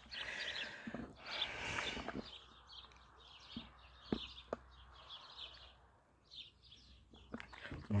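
Small birds chirping in quick, repeated short calls, with a few footsteps crunching on a gravel road.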